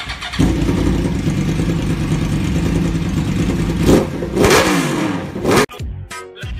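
Motorcycle engine running steadily from about half a second in, then revved twice near the end with the pitch rising and falling, before it cuts off suddenly.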